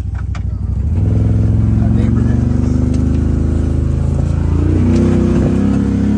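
Vehicle engine pulling under throttle, rising in level about a second in and climbing slowly in pitch. The pitch wavers about four and a half seconds in, then holds higher to the end.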